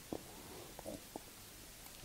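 A pause in a man's speech: faint room tone with three brief, soft clicks.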